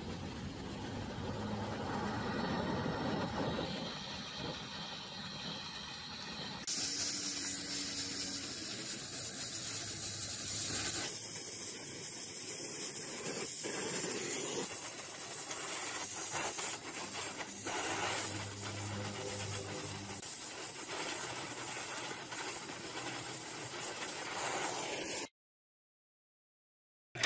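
Gas welding torch flame hissing steadily while a steel tube joint is welded. About seven seconds in the hiss jumps to a louder, sharper sound as the flame is turned from a soft yellow flame to a hot blue welding flame. The sound cuts off abruptly near the end.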